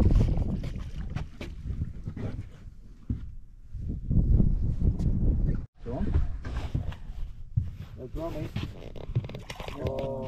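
Irregular low rumbling of wind on the microphone, with scattered knocks and clicks. Voices come in near the end.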